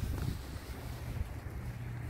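Steady low outdoor rumble: wind buffeting the phone microphone, over a faint hum of distant traffic.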